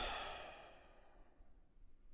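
A person's sigh: one breath out that is loudest at the start and fades away over about a second.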